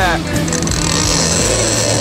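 Boat's outboard engines running at slow ahead, a steady low hum under a constant hiss of wind and water.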